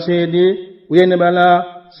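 A man's voice chanting in long, steady held tones: two drawn-out phrases, the second beginning about a second in.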